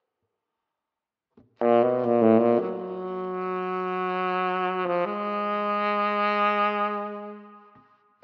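Solo tenor saxophone coming in about a second and a half in with a few loud, quick notes, then a long held low note, briefly broken about five seconds in, that fades away near the end.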